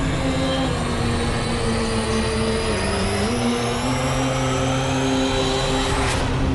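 Intro soundtrack: held drone notes that shift pitch about three seconds in, over a deep steady rumble, with a rising whoosh in the second half.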